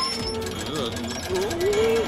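Cartoon background music with a man's wordless vocal noises over it, a wavering pitch that rises and is held near the end.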